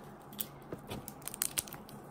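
Steamed blue crab shell snapping and crackling as the legs are pulled off at the knuckle by hand: a run of small, sharp cracks, closest together in the second half.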